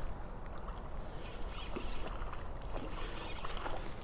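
A hooked smallmouth bass splashing at the water's surface as it is reeled in, with light scattered splashes over a steady low rumble.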